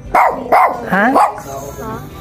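Shih Tzu barking, several sharp barks about half a second apart.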